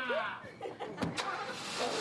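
A car starting up and running, with a thump about a second in, such as a door shutting.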